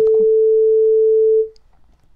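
A single steady electronic beep, one pure tone lasting about a second and a half before fading out. It is the cue tone of an exam listening recording, marking the start of the second playing.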